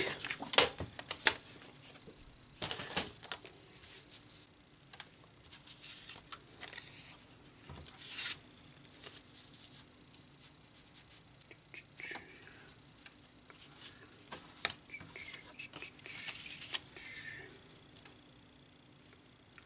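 Photo prints and cardstock strips being handled on a craft table: quiet rustles, short scrapes and scattered light taps as pieces are slid and set down. About three seconds in, a louder scrape comes as a paper trimmer's blade is slid through a photo print.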